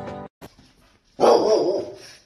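A dog barks once, loudly, about a second in; a single drawn-out bark.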